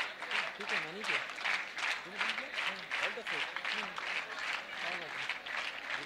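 Audience applauding steadily, with voices talking faintly underneath.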